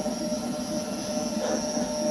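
The cooling fans of a 3D printer and its ATX power supply running steadily just after power-up: an even whir with a constant mid hum and a faint high whine.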